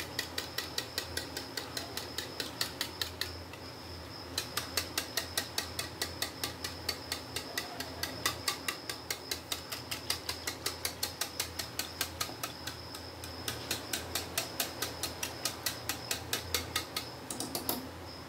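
A metal spoon beating yogurt in a bowl, clicking against the bowl about four times a second in a fast steady rhythm, with a brief pause about three seconds in.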